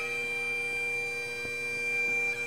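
Bagpipe music: a single long note held steady on the chanter over the constant drone.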